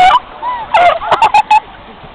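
People laughing: a loud burst at the start, then a quick run of short 'ha' bursts.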